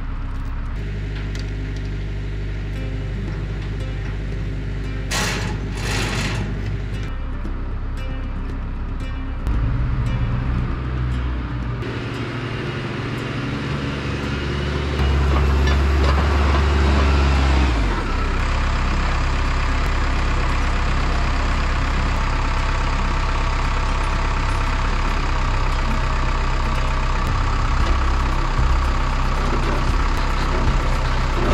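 A heavy machine's engine running as it lifts and moves a shipping container. It speeds up about ten seconds in, surges loudest around fifteen to eighteen seconds, then holds steady at higher revs. Two short hisses come about five and six seconds in.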